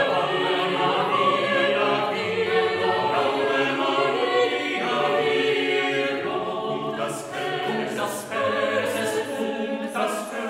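Mixed chamber choir of sopranos, altos, tenors and basses singing a cappella in several parts. Several hissing 's' consonants of the sung text stand out in the last few seconds.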